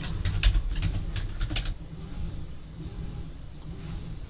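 Computer keyboard typing: a quick run of keystrokes entering a number, about ten clicks in the first two seconds, then only a low hum.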